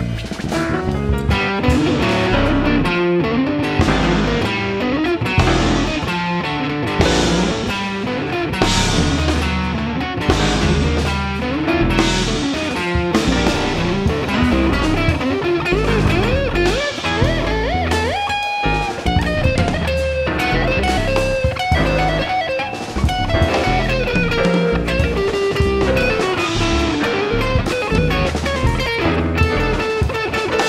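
Jazz ensemble music led by electric guitar playing bent, gliding notes over busy drums.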